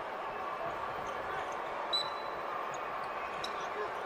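Basketball game ambience: a steady murmur of crowd noise, with faint court ticks and one short high squeak about two seconds in.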